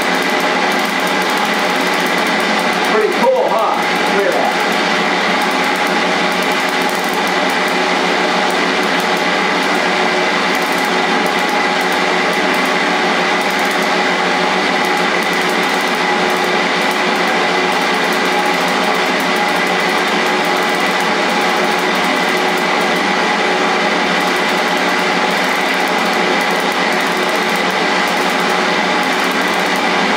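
Motor-driven belt of a Van de Graaff generator running with a steady, even whine that has several overtones, with faint irregular ticks from high-voltage sparks jumping to a bare arm.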